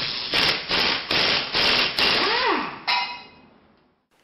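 Sound effects for an animated logo intro: five quick rushes of noise, a swoop that rises and then falls, and a sharp final hit that rings and fades away.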